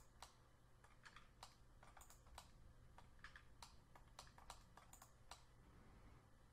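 Faint, irregular clicking of a computer keyboard and mouse, several clicks a second, over a faint low hum.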